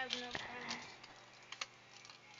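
The fading tail of a voice, then a few faint, sparse small clicks.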